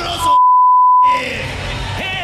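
A loud, steady 1 kHz censor bleep, about a second long, blanking out a word of a man's microphone speech; all other sound drops out while it plays. The speech resumes over background music and crowd noise afterwards.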